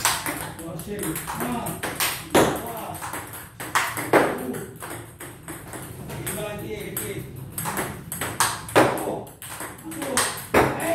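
Table tennis forehand rally: sharp, irregular clicks of the ball striking the paddle and bouncing on the table top.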